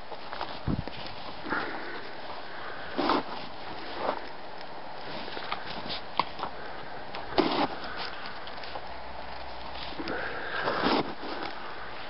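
Jack Russell–rat terrier sniffing at the snow with its nose pushed into it, in short bursts at irregular intervals.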